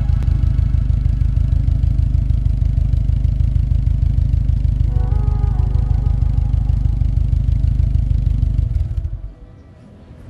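2016 Subaru WRX STI's turbocharged flat-four running at idle through its exhaust, an even low pulsing rumble that cuts off about nine seconds in. Background music plays over it.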